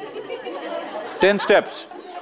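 Voices: a low murmur of speech, then two short, loud vocal syllables in quick succession a little past the middle.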